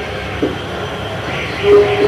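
Marker scratching on a whiteboard as words are written, over a steady background hiss, with a short hummed vowel from a man near the end.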